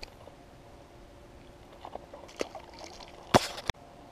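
A small bluegill dropped back into the pond: one splash a little over three seconds in, after a few faint handling clicks, with a short sharp click just after the splash.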